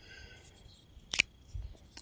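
A folding pocket knife handled and set down on a wooden stump, giving one sharp click a little past the middle, with a few faint small knocks around it.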